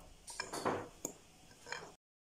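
Spoon scooping semolina from a glass bowl: a few short scrapes and sharp clinks of the utensil against the glass.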